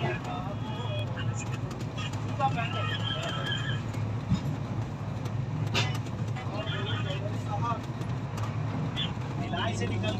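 Steady low rumble of the Rajdhani Express running, heard from inside the air-conditioned coach, with faint voices of other passengers.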